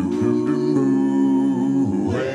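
Five-voice a cappella doo-wop group, four men and a woman, singing held chords in close harmony without instruments, the chord shifting briefly about halfway through.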